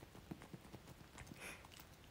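Faint, irregular clicks and taps from handling and squeezing a small rubber goldfish squeeze-toy keychain close to the microphone.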